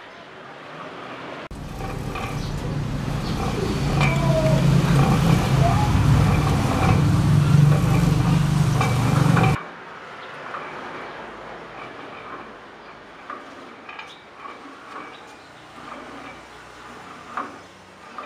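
A loud, low rumble with a steady hum swells over several seconds and cuts off abruptly. After it come light clicks and knocks from a homemade rope-and-pulley cable row machine being pulled.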